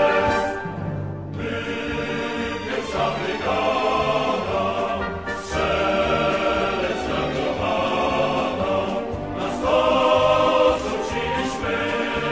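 Choral music: a choir singing in long held phrases, with short breaks between phrases.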